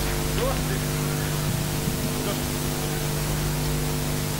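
Steady hiss and low hum from the hall's sound system between songs, with faint voices in the audience.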